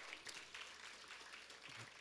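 Faint applause from a congregation, a soft even patter of many hands clapping.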